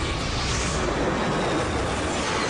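Cartoon sci-fi sound effects: a dense, steady rushing rumble of an incoming swarm of flying objects, with a whoosh that swells about half a second in.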